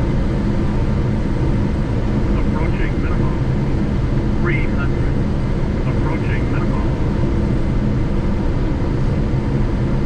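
Steady cockpit noise of a Gulfstream G650 on final approach: airflow and engine noise with a constant low hum, unchanging in loudness. A few brief, faint voice sounds come through it.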